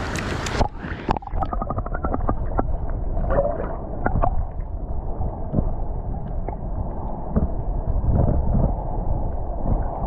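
Water splashing as the camera goes under the surface. Then muffled underwater sound: a low rumble of moving water with scattered clicks and, early on, a quick run of ticks.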